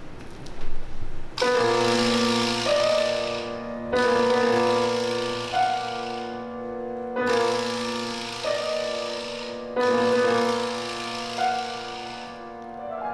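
Live chamber ensemble playing a series of four held chords, each entering suddenly and lasting about two and a half seconds, with a hissing wash above the chord tones.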